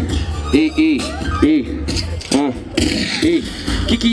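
Hip-hop beat with a steady bass line playing over a sound system, with a man's voice rapping over it through a microphone.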